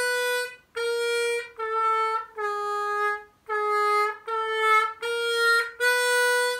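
C diatonic harmonica playing the hole 3 draw: the natural note, then stepping down through its three semitone draw bends and back up to the natural note. About eight held notes, each under a second, with short breaks between.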